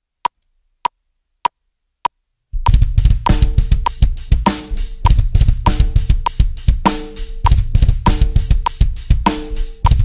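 Four evenly spaced count-in clicks a little over half a second apart, then a drum kit comes in playing a broken double bass drum groove: fast, shifting kick-drum patterns under a snare backbeat and cymbals.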